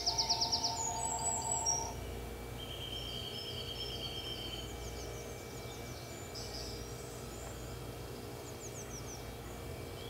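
Small birds chirping, a busy burst of high chirps and trills in the first two seconds, then a long even trill and scattered chirps, over a steady low hum.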